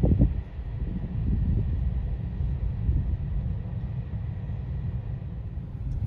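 Freight train rolling past a level crossing, a steady low rumble heard from a car queued at the crossing, with a burst of loud bumps at the very start.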